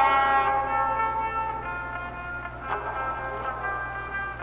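Electric guitar: a strummed chord rings out and fades over the first couple of seconds, followed by a couple of softer picked notes.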